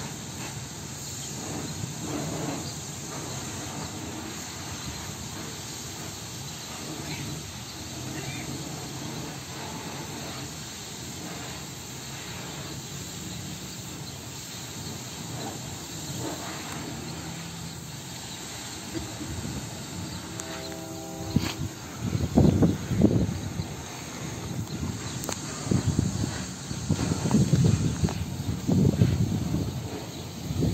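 Steady low outdoor rumble. About twenty seconds in comes a brief horn blast of about a second, then loud, uneven low rumbling.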